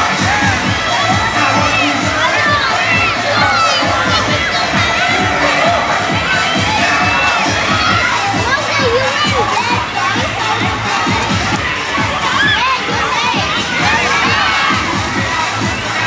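A crowd of young children shouting and cheering, many high voices overlapping, with a pop song's steady beat playing underneath.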